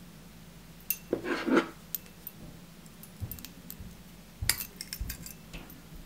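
Small metal clicks and clinks of a silver Colorado spinner blade being fitted onto a split ring with split-ring pliers, the metal parts knocking together; a quick run of clicks comes about four and a half seconds in. One brief louder noise, the loudest thing heard, comes a second or so in.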